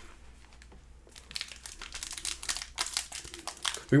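Foil wrapper of a Panini Prizm Draft Picks basketball card pack crinkling in the hands as it is torn open. The crinkling is a quick run of small, sharp crackles that starts about a second in.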